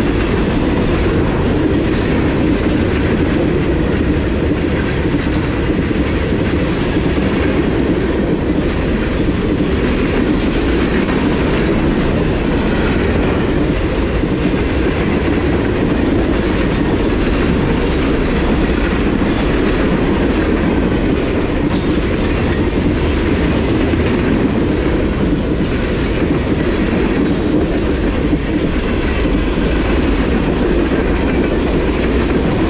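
Norfolk Southern freight train passing close by: a steady, loud rumble of steel wheels on rail, broken by repeated clickety-clack as the wheel trucks of the hoppers, tank cars and gondolas cross rail joints.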